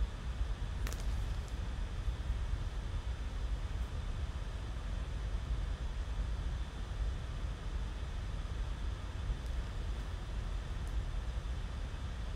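Steady low background rumble and hiss with no clear source, with a faint click about a second in.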